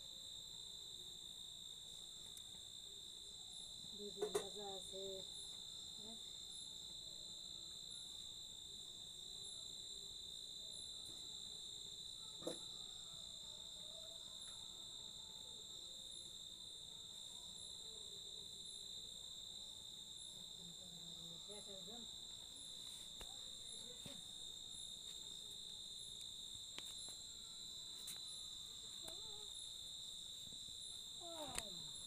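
Night insects trilling in one steady, unbroken high-pitched tone, with a faint regular ticking above it. A couple of brief knocks come about four and twelve seconds in.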